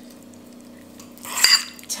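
Metal fork scraping and clinking against a bowl as it stirs a wet mashed chickpea mixture, a short loud burst about a second and a half in. Before it, only a low steady hum.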